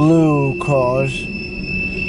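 Freight car wheels squealing steadily as the train rolls through the curve of a wye, over the rumble of the passing cars. In the first second a man's voice makes two short wordless sounds, louder than the train.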